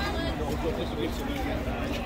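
Speech: voices of people in a crowd of onlookers talking, one saying "thank you".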